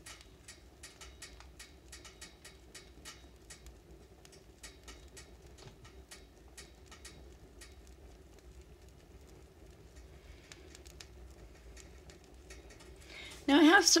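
Wood fire crackling in a woodstove: a long run of irregular sharp snaps and pops over a faint steady low hum. A woman's voice starts near the end.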